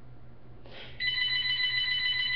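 Telephone ringing: a steady high ring that starts about halfway through and holds without a break.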